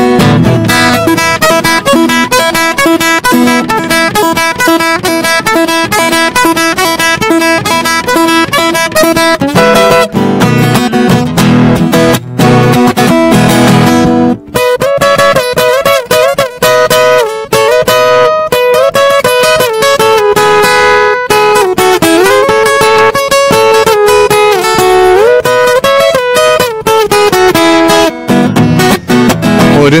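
Steel-string acoustic guitar playing an instrumental break of a sertanejo pagode tune: rhythmic strummed and picked chords, turning about halfway through to a picked melody with bent and sliding notes.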